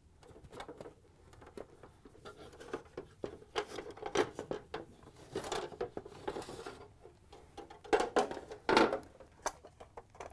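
Hard plastic parts of a refrigerator ice bin clicking, scraping and knocking as the end housing is worked loose by hand and lifted off the auger shaft, with the loudest knocks near the end.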